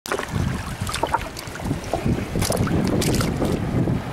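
Wind rumbling on the microphone over shallow seawater sloshing, with a few sharp splashes.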